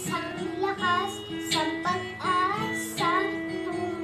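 A young boy singing a song over acoustic guitar accompaniment, the sung phrases sliding in pitch over steady guitar notes.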